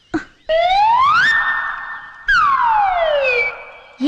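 Comic film sound effect: a siren-like whistling tone slides up and holds, then a second one starts high and slides down.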